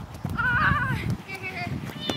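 A person's high, wavering shout, its pitch wobbling up and down for about half a second, over a low rumble, then a shorter, steadier high call.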